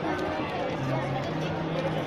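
Voices of several people talking over steady outdoor street noise, with a low steady hum underneath.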